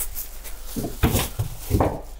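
Plastic-wrapped stacks of paper cups crinkling and rustling as they are handled and pushed into a wooden cabinet cubby, with a few soft knocks.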